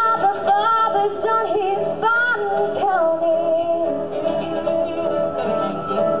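A teenage girl singing a country song live into a microphone over backing music. Her voice moves through sung phrases in the first half, then the accompaniment's steadier held tones carry the second half.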